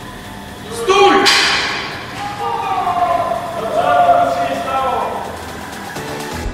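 Distant, unintelligible people's voices echoing in a large hall, with a sudden thump about a second in.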